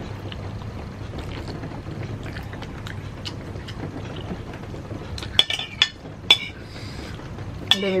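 Eating sounds of a mouthful of instant noodles, followed by a metal spoon clinking sharply against a ceramic plate three times about five to six seconds in.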